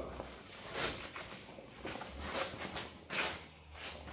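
Quiet garage room tone with a faint low hum and a few short soft rustling or shuffling noises from someone moving about with the phone.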